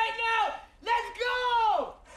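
A young woman's high-pitched screaming: two long cries, each held on one pitch and then falling off at the end, with a short break between them.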